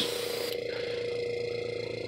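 Small airbrush compressor running with a steady hum; the airbrush's hiss of spraying stops suddenly about half a second in.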